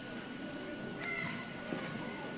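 Hushed audience in a large gymnasium hall, with a short high wavering sound about half a second in and a faint steady high tone.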